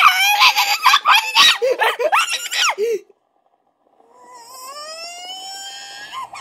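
Cartoon voices played through a laptop's speakers: a character yelling for about three seconds, then, after a sudden short silence, a long wailing cry that rises in pitch and holds, like a small child crying.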